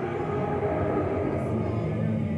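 Dark-ride vehicle rolling along its track with a steady low rumble.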